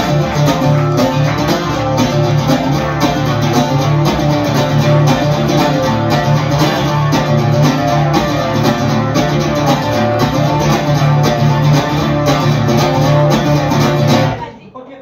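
Amplified twelve-string acoustic guitar strummed in a steady, even rhythm with a bright, jangling tone and no voice. The strumming stops abruptly at the very end.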